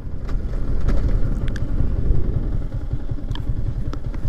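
Yamaha MT-15's 155 cc single-cylinder engine running steadily as the bike is ridden, heard from the rider's position, with a few faint clicks.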